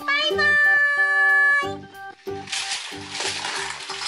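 Children's background music with a steady beat: a long held high note with a rising start, then a loud hiss over the beat in the second half.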